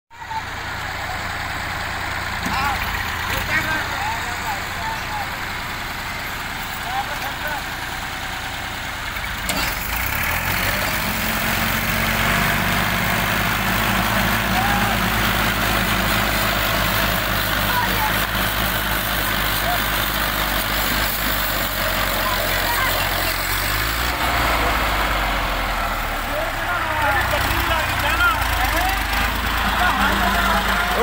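Engines of two Massey Ferguson tractors, a 135 and a 240, running while chained together in a tug-of-war. The engine sound grows louder about a third of the way in, as they pull against each other under load, with men's voices calling over it.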